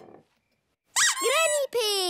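A soft footstep right at the start, then a short hush. About a second in, a cartoon child's high-pitched voice calls out with sliding pitch.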